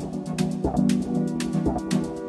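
Dub techno in a continuous DJ mix: held, echoing chord tones over a steady four-on-the-floor beat, with crisp hi-hat ticks several times a second.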